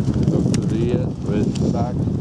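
Wind buffeting the microphone, with short snatches of a person's voice about a second in and near the end.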